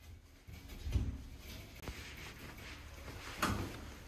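Handling noise from a black Coosa composite panel being set upright against a wall: a soft thump about a second in, a sharp click, and a brief scraping rush near the end, over a low steady rumble.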